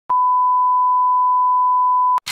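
Television colour-bar test tone: a single steady beep at one pitch, held loud and unbroken from just after the start.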